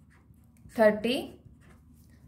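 Faint scratching of a pen writing numbers on a sheet of paper, with one short spoken word about a second in.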